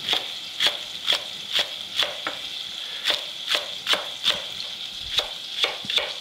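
Chef's knife chopping leek on a wooden cutting board, about two strokes a second with a short pause near the middle, over the steady sizzle of bacon frying in olive oil in a saucepan.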